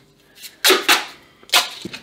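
Tape being pulled off a roll in two short rasps, the first about half a second in and the second near the end, followed by a small click.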